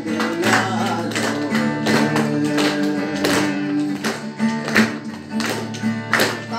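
A man singing a song while strumming a steel-string acoustic guitar in a steady rhythm, about two to three strokes a second.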